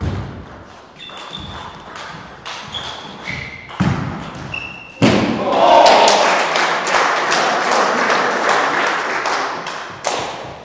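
Table tennis rally: the celluloid ball clicking off bats and table, with short squeaks of shoes on the hall floor and a thud about four seconds in. From about five seconds in, as the rally ends on match point, louder clapping and shouting in the hall.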